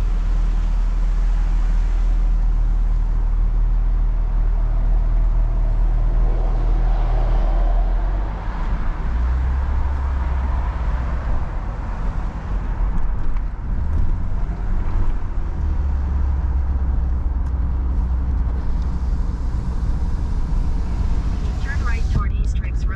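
Car engine and road noise, a steady low hum whose pitch shifts about eight seconds in.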